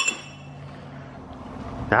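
A steel axle-hub lock ring dropped into a plastic bucket lands with a single sharp metallic clink that rings briefly, right at the start.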